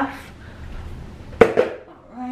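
An empty clear plastic bowl being handled, with one sharp knock about one and a half seconds in.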